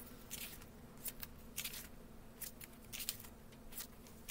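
Pages of a paperback book being turned by hand: a quick, uneven run of short papery rustles and flicks, about two or three a second.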